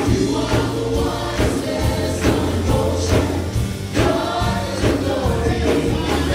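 A live worship band playing a song: several voices singing together over strummed acoustic guitar, held bass notes and a regular beat of percussive hits.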